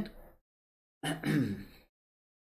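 A man's short wordless vocal sound, like a brief sigh or chuckle, about a second in, falling in pitch.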